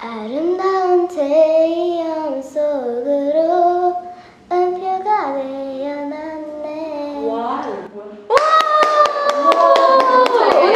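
A young girl singing a Korean pop ballad unaccompanied, in a high child's voice, phrase by phrase with short breaths between lines. Near the end, hand clapping breaks out over a long held vocal note.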